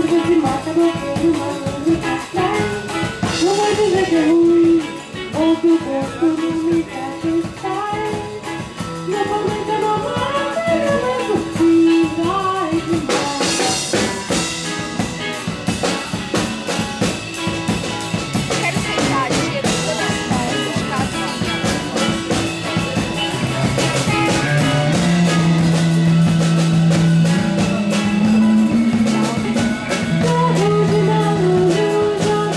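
Band music: a sung melody over drums and guitar.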